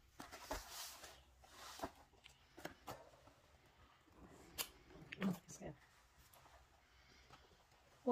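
Faint scattered clicks and light rustles on a hollow plastic toy car, with a brief quiet voice about five seconds in.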